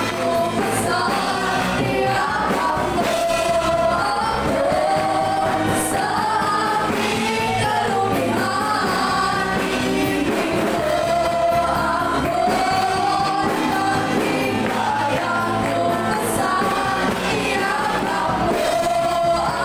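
Live worship music: female vocalists singing with a band of guitars, drums and keyboard, the congregation joining in.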